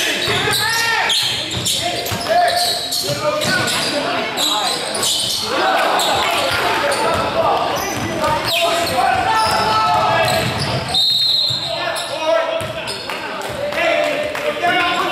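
A basketball bouncing on a hardwood gym floor in repeated sharp knocks as play runs up the court, echoing in the large hall, over indistinct voices from players and the sideline.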